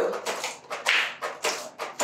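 Paint roller on an extension pole rolled back and forth through ceiling paint in a paint tray, a quick regular series of wet strokes about three a second.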